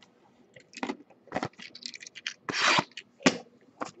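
Trading-card packaging handled and opened by hand: a run of short crinkles and clicks, with a longer crinkling rustle about two and a half seconds in.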